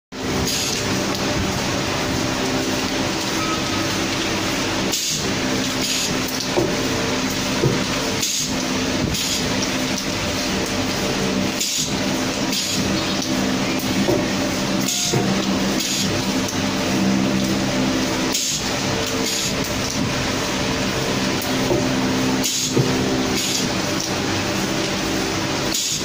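Pneumatic degassing-valve applicator press cycling about every three to four seconds, each stroke marked by a short hiss of air, over a steady machinery hum.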